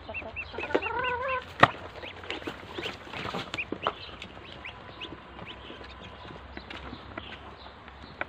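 Muscovy ducklings peeping, many short high arched peeps in quick runs, over scattered clicks of bills at a feeding bowl. A single sharp knock stands out about one and a half seconds in.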